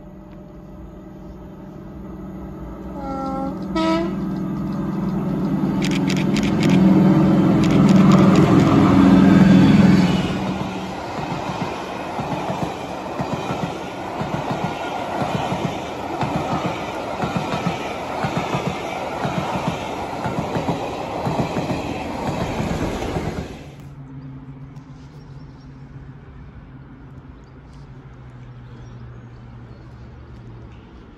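A locomotive-hauled passenger train running through a station. A brief horn sounds about 3 s in, then the locomotive's low, steady engine note grows louder and peaks around 8–10 s. The coaches then pass with a rhythmic clatter of wheels over the rails, until the sound cuts off abruptly about 23 s in, leaving quieter station background.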